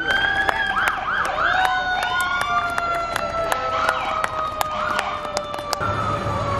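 Several emergency-vehicle sirens sounding at once: one long held tone drifting slowly down in pitch, with repeated rising-and-falling wailing sweeps over it and scattered sharp clicks.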